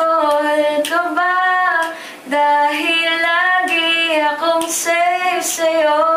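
A woman singing unaccompanied, making up a song on the spot, in long held notes with a short breath break about two seconds in.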